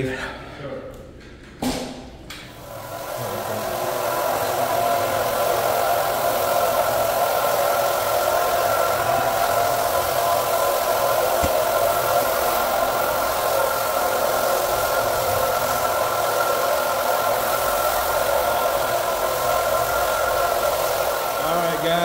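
Electric rotary floor buffer fitted with a sanding screen, abrading the finish of an engineered hardwood floor. Its motor comes up to speed about two and a half seconds in and then runs with a steady hum.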